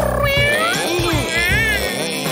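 Cats meowing, several drawn-out meows gliding up and down in pitch, over background music.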